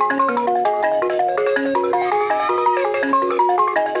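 Two balafons, West African wooden xylophones with calabash gourd resonators, played together with mallets in a fast, dense, repeating pattern of notes.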